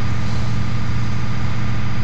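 Steady low drone of a fire appliance's engine-driven pump running at a constant speed, over an even rushing noise.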